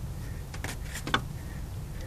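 Faint clicks of an ignition wire being handled and pushed back on, over a low steady hum.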